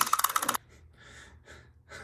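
A small plastic toy's mechanism clicking rapidly and evenly, about twenty clicks a second, which stops about half a second in. Then come a few faint breaths.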